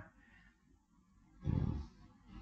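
A pause with near silence, then a single short, low grunt from a man's voice about one and a half seconds in.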